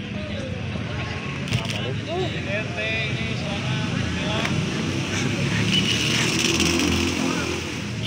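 Distant calls of footballers across the pitch over a steady low rumble, with one short sharp knock about one and a half seconds in.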